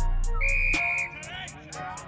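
A short, steady whistle blast lasting about half a second, over backing music whose bass beat drops away shortly after the whistle starts.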